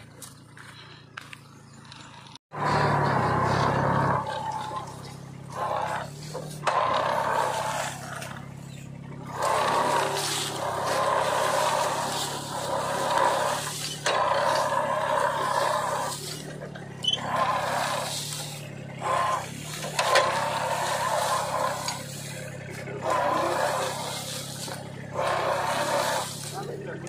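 Tractor engine running with its mounted turmeric-digging implement working through the soil. It starts suddenly about two and a half seconds in and rises and dips with the load.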